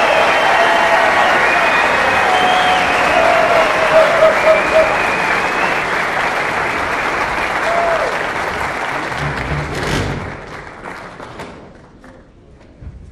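Theatre audience applauding and cheering, with some pitched calls over the clapping; the applause dies away from about ten seconds in.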